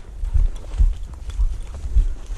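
Footsteps of a person walking through tall dry grass, thudding about twice a second, with the stalks brushing and crackling against the legs.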